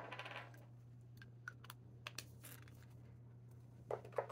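Faint light clicks and taps of a small ink vial and its cap being handled on a desk. There is a brief rattle at the start, then scattered single ticks.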